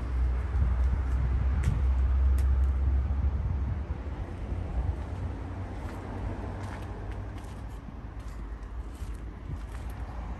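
Low outdoor rumble, loudest for the first four seconds and then easing, with a few light clicks and taps.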